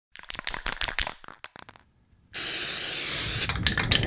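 Spray-paint sound effect: a run of sharp clicks, then a loud hiss of aerosol spraying starting about two seconds in and lasting about a second, then crackling as the paper stencil is peeled off.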